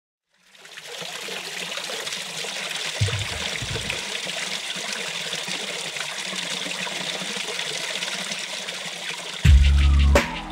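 Trickling running water, fading in over the first second and then steady. A short low bass swell comes in about three seconds in, and a deep bass beat of music starts near the end.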